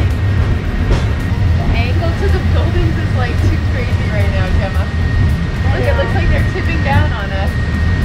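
Hong Kong Peak Tram funicular car running on its rails, heard from inside the car as a steady low rumble with a thin steady high tone over it. Indistinct voices of passengers talk over the rumble.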